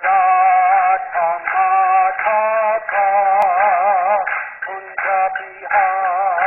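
Introductory music: a sung melody with strong, wavering vibrato over a low steady drone.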